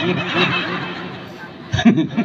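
A man laughing into a handheld microphone: a run of quick, regular laughing pulses that tails off over the second half, with a short burst of voice near the end.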